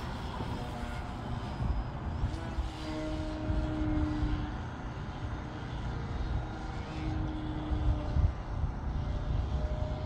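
Electric RC aerobatic plane (E-flite Carbon-Z Yak 54) flying high overhead: its brushless motor and propeller whine comes through faintly as a held tone twice, about three seconds in and again about seven seconds in. A low, steady rumble lies under it throughout.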